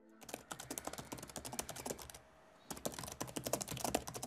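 Fingers typing on a Toshiba laptop keyboard: a quick, uneven run of key clicks, with a short pause about halfway through before the typing carries on.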